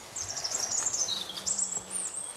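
Small birds singing in woodland: a run of quick, high chirps and trills, one phrase dropping in pitch about halfway through.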